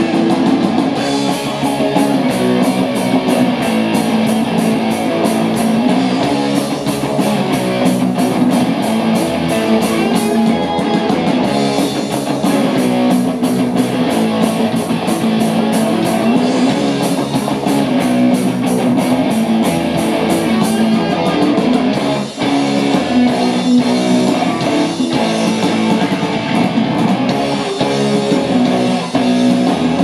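Live rock band playing: electric guitar over bass guitar and drums, with a steady cymbal beat.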